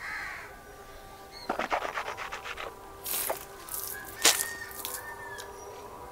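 A sip of water from a glass, then water swished and worked around the mouth to rinse it, heard as a run of small wet clicks and splutters. Faint bird calls carry on behind.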